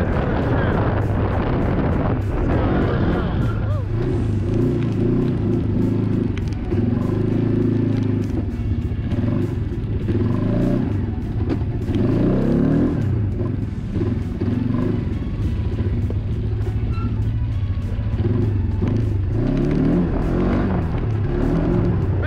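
An ATV engine running under load on a rough trail, its revs rising and falling, with background music over it.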